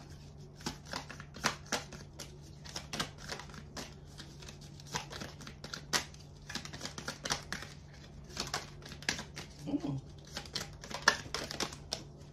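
Cards being handled and laid on a glass tabletop: a run of irregular light clicks and taps, several a second, over a steady low hum.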